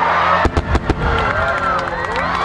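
Fireworks going off: a string of sharp bangs and crackles starting about half a second in, with a crowd's voices and music underneath.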